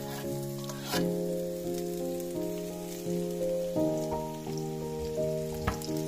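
Background music of held notes changing about every second, over a faint sizzle of sliced onion and green chili dropping into hot oil in a frying pan, with a sharper crackle about a second in and another near the end.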